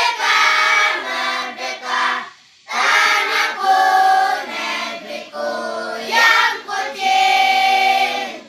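A group of voices singing together in held, sustained notes, with a short break between phrases about two and a half seconds in.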